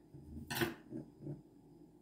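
A light knock or clink against a ceramic plate about half a second in, followed by a few fainter soft knocks.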